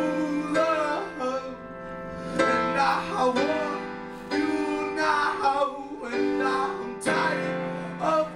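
A male voice sings phrases over sustained chords played on a Roland RD-300NX digital stage piano, with new chords struck every couple of seconds.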